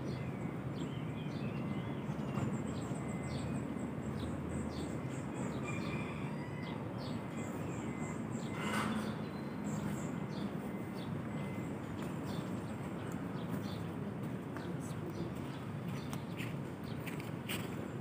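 Outdoor garden ambience: small birds chirping with short, scattered high calls over a steady low background rumble, with a brief rustle about halfway through.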